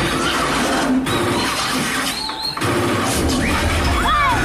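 A feature film's action-scene soundtrack playing loudly in a cinema, heard through a phone's microphone, with the audience whistling over it as short rising and falling whistles in the second half.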